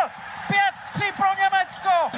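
A man's voice speaking in short phrases: television ice hockey commentary.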